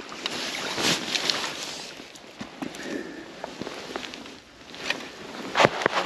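A landing net being handled at the water's edge to land a small fish: uneven rustling and water noise, with a few light clicks and a sharp knock about five and a half seconds in.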